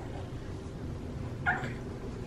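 A house cat gives one short meow about one and a half seconds in, over low room noise.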